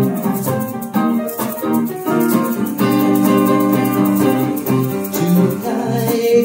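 Electric guitar and piano playing an instrumental passage together: short rhythmic chord stabs for the first couple of seconds, then longer held chords.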